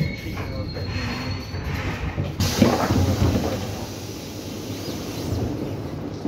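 Metro train slowing to a stop with a low rumble and a thin squealing tone from the wheels and brakes. About two and a half seconds in, a sudden hiss of air is followed by the clatter of the carriage's sliding doors opening, the loudest moment, and then the sound settles to a quieter hum.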